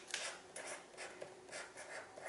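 Sharpie permanent marker writing on paper: faint, irregular pen strokes as a word is lettered out.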